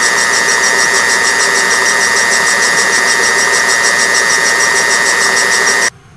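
Antique Rottler boring bar running, its cutter boring out a Mercury 2.5L outboard cylinder: a loud, steady mechanical whine with a strong high tone, cutting off suddenly near the end.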